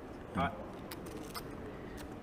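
Poker chips clicking against each other as they are handled and stacked at the table, with a few sharp clicks about a second in.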